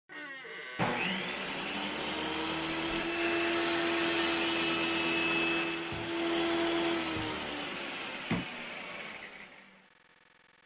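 Sound effect of a motor-driven circular saw: a click about a second in, then a steady whine over a dense rush of noise as the blade runs and cuts wood, with a few knocks near the end before it fades away.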